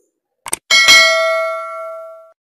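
Subscribe-button sound effect: a quick double click, then a bell ding that rings with a few clear tones and fades over about a second and a half.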